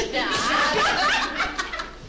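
A group of teenage students laughing together, with several voices overlapping.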